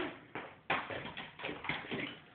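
A football being kicked and bouncing: several irregular thuds, the loudest a little over half a second in.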